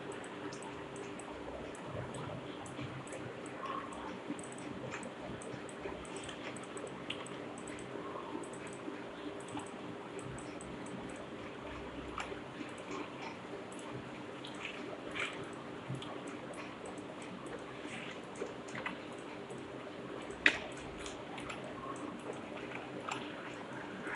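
Faint steady room hum with scattered small clicks of a computer mouse, one sharper click about twenty seconds in.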